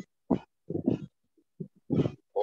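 Short, broken fragments of a person's voice over a video-call line: brief hesitant sounds that cut in and out, with dead-silent gaps between them.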